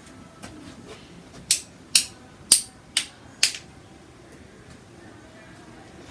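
Five sharp flicking snaps, about two a second, as a fan brush loaded with runny soft-body acrylic paint is flicked at the canvas to spatter it.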